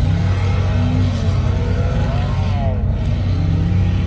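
Bolt-on Ford F-150's 5.0 V8 idling, a steady low hum heard from inside the cab.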